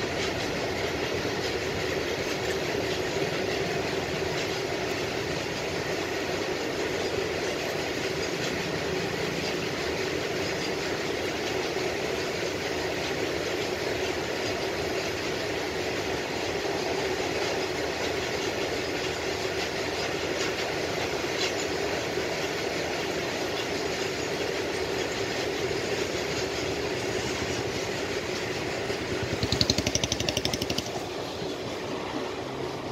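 Indian Railways train running at speed: steady rumble and rolling wheel noise on the track. Near the end comes a short, louder clatter of wheels.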